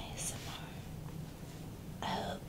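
A woman whispering: a short sibilant hiss just after the start, then a breathy pause over a low steady hum.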